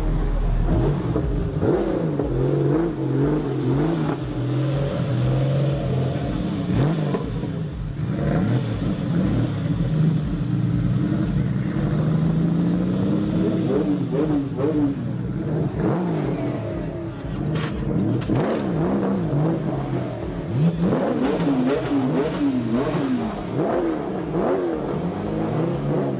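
Porsche 993 Carrera RS's air-cooled flat-six running and being revved again and again, its pitch rising and falling with each blip, the blips coming more often in the second half. People's voices are faint underneath.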